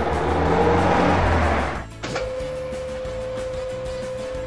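Cartoon car-driving sound effect, a low engine-like noise that cuts off sharply about two seconds in. A single steady tone is then held over background music.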